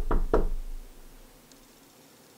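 Knocking on the front door: a quick run of sharp raps, the last two just after the start, dying away within about a second.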